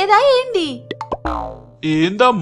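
A cartoon comic sound effect: a quick falling-pitch boing a little past the middle, just after a couple of short clicks, over soft background music.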